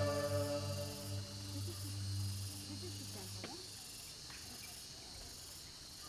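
Cicadas droning in a steady, high-pitched pulsing hiss, with a few faint chirps in the middle. Soft ambient music fades out in the first second or so.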